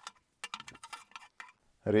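A quick run of light clicks and taps, lasting about a second, as the 3D-printed robot shoulder assembly is handled and turned around on its aluminium-profile base.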